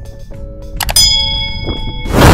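Subscribe-and-bell overlay sound effect: mouse clicks, then about a second in a bright bell ding that rings on, over background music.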